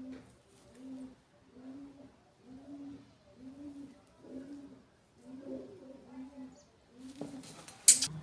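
Pigeon cooing: a steady run of short, low coos, about one a second. Near the end comes a brief rustle and one sharp, loud knock.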